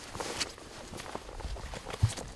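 Footsteps crunching on the forest floor, with brush and ferns rustling against clothing, in an uneven stride of crunches and soft thuds.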